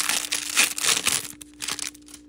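Foil wrapper of a trading-card hanger pack crinkling and tearing as it is opened by hand and the cards are slid out; the crinkling dies away about two-thirds of the way through, leaving a few soft clicks of card handling.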